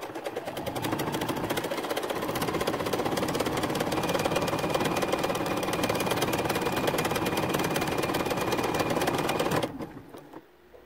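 Juki computerized home sewing machine stitching a buttonhole with its buttonhole foot: a fast, even run of needle strokes at a steady speed that stops suddenly near the end.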